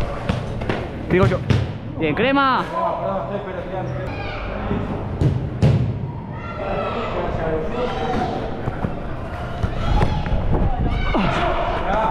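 A football being kicked on an artificial-turf pitch: a few sharp thuds in the first two seconds and two more around five seconds in, with players shouting to each other in between.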